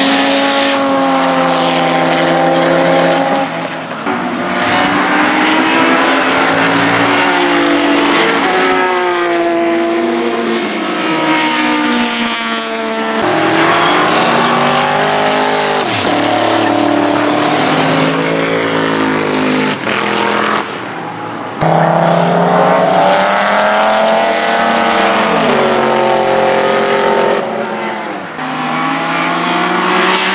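Racing car engines at full throttle passing the camera. Each engine note climbs as the car accelerates and drops as it passes, with breaks where it shifts gear. The sound jumps abruptly to a different car several times.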